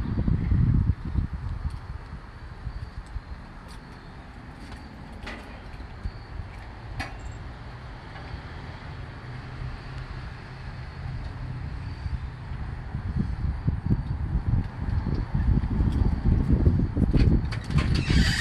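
Gusty wind rumbling on the microphone, swelling and easing and growing stronger near the end, with a few faint clicks.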